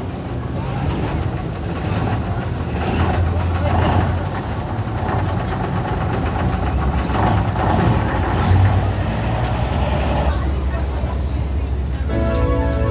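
A bus engine runs with a steady low rumble, under indistinct voices.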